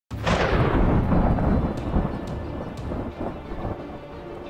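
Thunder-like rumble sound effect opening a channel intro: a sudden loud crack that rolls on and slowly dies away over a few seconds.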